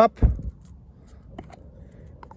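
A single dull, low knock as a portable espresso machine is set down, then a quiet stretch with a couple of faint light clicks as its screw-on top lid comes off.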